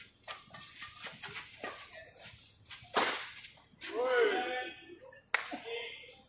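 Badminton rally: quick racket hits on the shuttlecock and footfalls on the court, with the loudest, a sharp hard hit, about three seconds in. A player's shout follows about a second later, and another sharp crack comes a little after five seconds.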